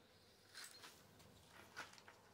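Near silence with faint, brief handling rustles as the charge controller and its cables are moved. There is a short, sharper rustle near the end.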